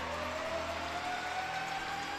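Arena crowd noise right after a home goal, with one long tone slowly rising in pitch over it.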